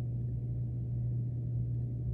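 Steady low-pitched hum, unbroken and unchanging, with a faint rumble beneath it.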